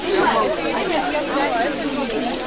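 Several people talking at once close by: overlapping conversational chatter with no single voice standing out.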